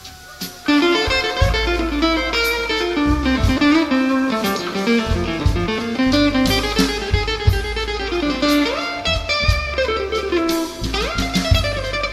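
Instrumental slow blues: an electric guitar plays a lead line over bass and drums. The band comes back in after a brief lull at the very start, and a few bent notes come near the end.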